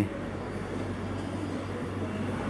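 Steady hum and hiss of air conditioners running, with a constant low drone underneath.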